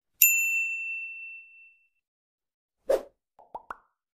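A single bright ding that rings out and fades over about a second and a half, followed near the end by a short plop and two quick small blips.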